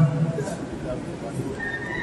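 A man's voice through a microphone and loudspeakers trails off at the start, followed by the hum of a large hall. About one and a half seconds in, a steady high tone comes in and holds level.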